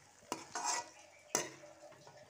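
A metal spatula stirring thick, wet cooked greens in a metal wok. It knocks sharply against the pan twice, about a second apart, with a scrape between the knocks.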